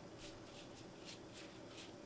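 Faint, soft crackling rustles of dry shredded wire pastry (tel kadayıf) strands as fingers spread and pat them out over a phyllo sheet, several light rustles a second.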